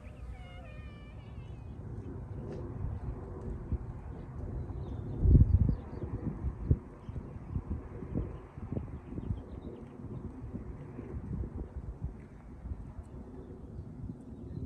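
Wind buffeting the microphone in uneven low rumbles, the strongest gust about five seconds in. A short run of high, wavering calls sounds at the very start.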